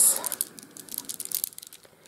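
A strand of faceted beads clicking and rattling against each other as it is handled in the hand, a loose run of light, irregular clicks.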